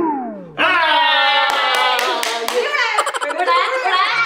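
Several people laughing, with a man clapping his hands about five times in the middle. A falling glide comes at the start.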